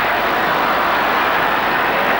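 Large football stadium crowd cheering steadily.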